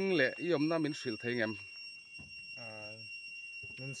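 A man talking, with a brief pause broken by a drawn-out voiced sound in the middle. A faint, steady, high-pitched whine runs behind the voice.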